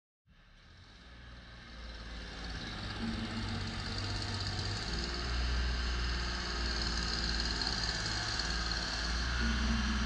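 Diesel engine of a Genie Z-62/40 articulating boom lift running steadily as the machine drives across a dirt lot, fading in over the first two or three seconds.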